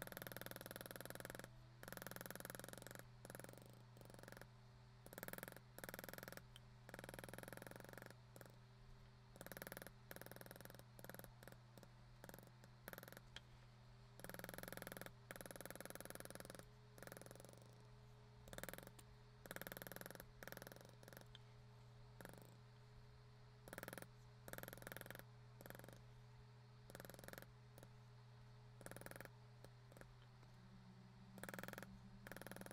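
Faint, rapid taps of a maul striking a leather beveler, in runs of about a second with short pauses, as the beveler is stepped along the cut lines to press them down. A steady low hum runs underneath.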